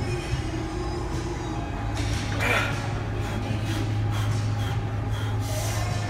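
A weightlifter's forceful breath, one sharp exhale about two and a half seconds in, from the strain of a heavy barbell back squat. A steady low hum and faint music run underneath.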